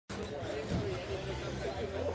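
Indistinct talking with a steady low hum underneath.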